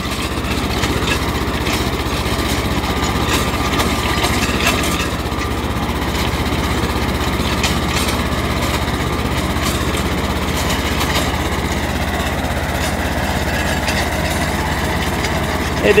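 Two-cylinder tractor engine running steadily under load as it pulls a reversible mouldboard plough through hard ground, with a fast, even low chugging throughout.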